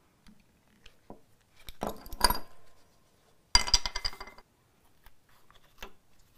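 Clatter and clinking of a bar clamp with plastic jaws being set on a clamping caul and tightened, in two bursts about a second and a half apart, the second a quick run of clicks with a metallic ring.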